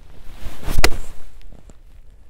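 Golf iron striking the ball: one sharp crack a little under a second in, with a rush of noise building just before it as the club comes down.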